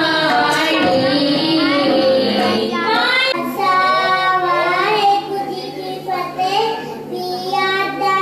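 A child singing solo into a microphone, one voice with gliding, held notes over a steady low drone. The first three seconds hold fuller sung music that breaks off abruptly where the child's singing begins.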